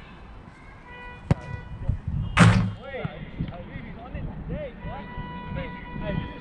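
Distant shouts and calls of players during a football game, with a sharp knock just over a second in and a louder, short thud about two and a half seconds in.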